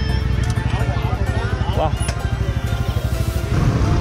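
A steady low rumble with faint voices and music over it.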